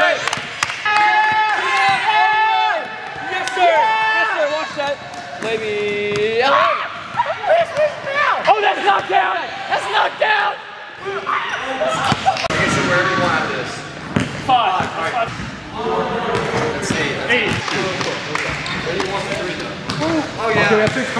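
A basketball bouncing and banging on a hardwood gym floor and hoop, mixed with boys yelling and cheering in the gym.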